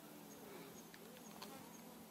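Faint buzzing of a flying insect: a low, steady hum with a few soft ticks, barely above near silence.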